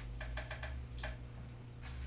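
Light, sharp clicks of a pen stylus tapping a writing surface while writing: a quick run of four, then one more about a second in and another near the end.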